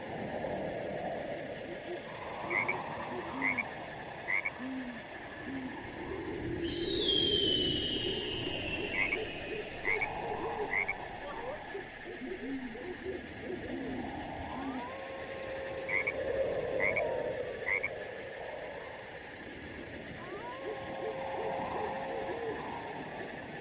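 Frogs croaking in a chorus, with short calls overlapping throughout. High chirps come in quick sets of three several times, over a steady high tone. A long falling whistle sounds about seven seconds in.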